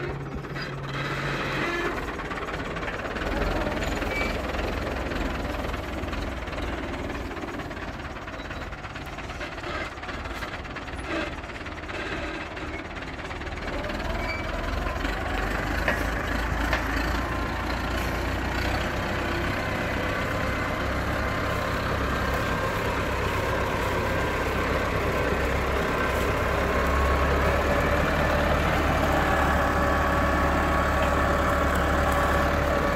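IMT 577 DV tractor's diesel engine running steadily under load as it pulls a three-shank subsoiler deep through the ground. It grows louder as the tractor comes closer.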